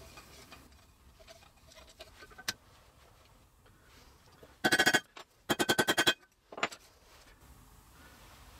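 Handling of small walnut strips and brass rivets on a workbench: a single sharp click, then two short bursts of rapid clicking rattle a little apart around the middle, and one last tick.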